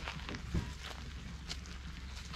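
Faint footsteps on the ground with scattered light clicks over a low steady rumble, and one slightly louder thump about half a second in.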